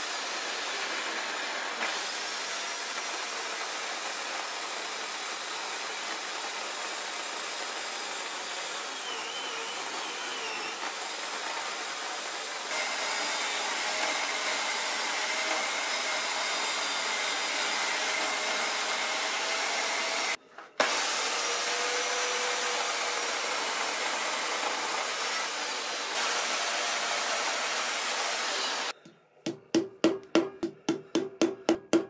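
Electric chainsaw running steadily and cutting into a poplar log. It gets louder about halfway through and cuts out for a moment a little later. Near the end it stops and quick hammer taps begin.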